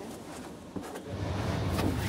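A cleanroom air-shower door latch clicks shut, then the air shower's jets start up and the rush of blown air builds steadily.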